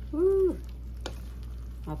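A wooden spoon stirs fried mackerel in a coconut-milk sauce simmering in an aluminium wok, with one sharp tap about a second in. A brief hummed 'mm' of a voice, rising then falling, comes near the start.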